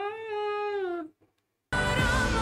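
A single voice holds one high sung note that dips in pitch at its end and stops about a second in. After a short dead gap, loud pop music with singing cuts back in near the end.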